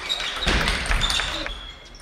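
Table tennis ball knocking sharply on table and bats during play in a reverberant sports hall.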